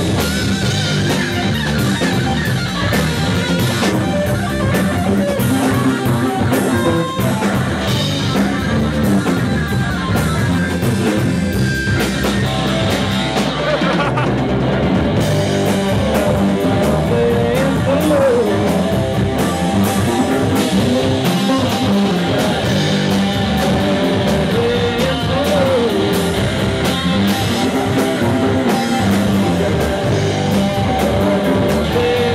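Live rock band playing: electric guitar over bass guitar and drum kit, at a steady full level.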